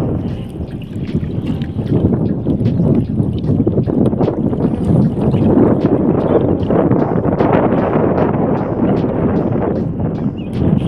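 Wind buffeting the microphone on open water, with water lapping and small splashes and drips as a wet monofilament gill net is hauled hand over hand out of the lake.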